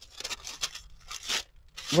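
A sheet of parchment paper rustling and crinkling as it is handled, in an irregular run of short papery rustles, the loudest about a second and a half in.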